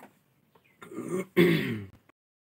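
A person clearing their throat, two short rasps about a second in, the second louder.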